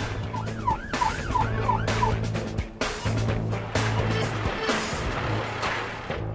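Emergency siren yelping, with a quick rise and fall about three times a second, heard from inside a moving ambulance cab. The yelp stops about two seconds in.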